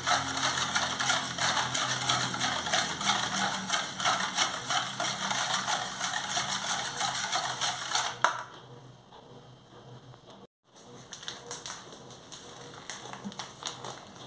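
Wire whisk beating a thin, watery mixture in a stainless steel bowl: rapid, continuous clicking and scraping of the wires against the metal. It stops abruptly about eight seconds in.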